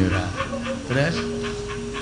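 Short vocal sounds from a person over steady, held musical notes of the gamelan accompaniment.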